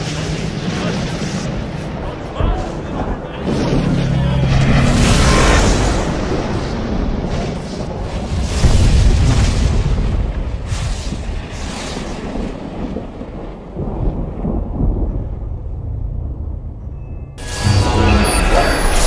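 Dramatic film soundtrack: score mixed with deep booms and rumbling effects, the loudest swell about eight and a half seconds in, cutting abruptly to a different sound near the end.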